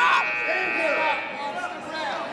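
Spectators and coaches yelling in a school gymnasium, the voices echoing in the hall. A steady high tone fades out about one and a half seconds in.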